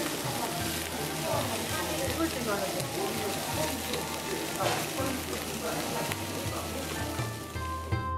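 Lamb ribs sizzling on a hot grill plate: a steady crackling hiss of fat and juices cooking. Quiet background music plays under it.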